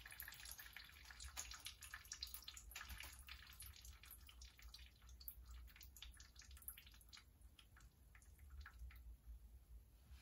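Faint, irregular drips of rusty water falling from a classic Mini engine into a drain pan, thinning out toward the end.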